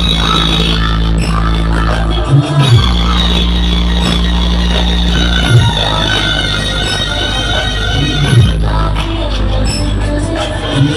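Dance music played very loud through large outdoor DJ speaker stacks, dominated by a heavy sustained bass, with a few sudden loud low hits spread through it.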